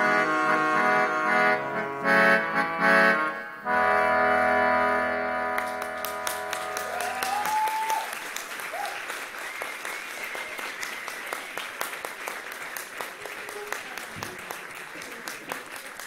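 A live band ends a song on long held chords, which die away about six or seven seconds in. Audience applause then takes over and runs on, with one rising whoop from the crowd as the clapping starts.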